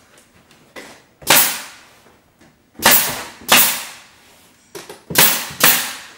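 Pneumatic nail gun firing five times, sharp shots each with a short hissing fade: one shot, then two pairs, as chair rail moulding is nailed to the wall. Lighter clicks come just before the first shot and the last pair.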